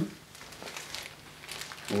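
Faint rustling and handling noise with a few soft clicks, as plastic packaging and clothing are moved.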